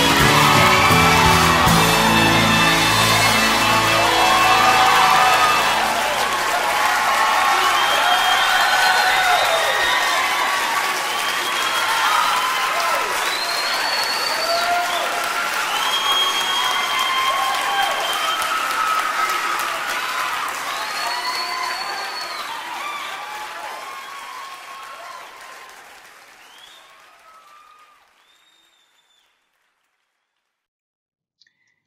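A song's final chord rings out, then an audience applauds with cheers and whoops. The applause fades out gradually over the last several seconds.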